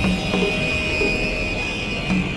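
Experimental electronic synthesizer music: steady high drone tones over a repeating low pulsing figure, with a few faint clicks.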